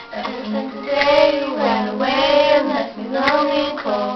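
Two girls singing along over a recorded pop song's backing music, in long sung notes that rise and fall.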